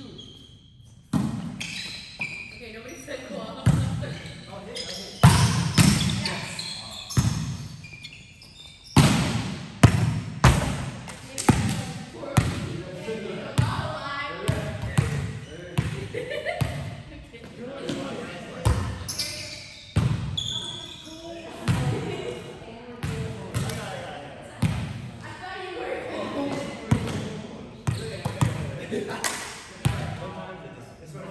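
Indoor volleyball play: a volleyball being struck by hands and arms and hitting the floor again and again, sharp slaps at irregular intervals that echo around a large gym, with players' voices in between.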